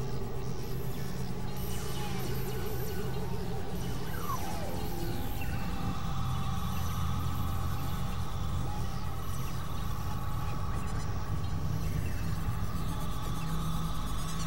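Experimental electronic synthesizer drone music. A steady low drone runs under a wavering mid tone early on. A tone slides downward about four seconds in, and a higher steady tone enters about six seconds in.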